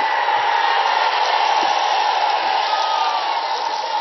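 Large crowd cheering and shouting, a steady din of many voices.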